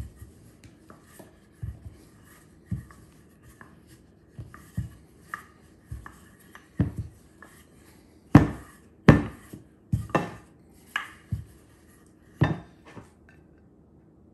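Wooden rolling pin rolling out pie dough on a floured countertop, with the dough lifted and turned by hand: irregular soft knocks and thumps, louder and more frequent in the second half.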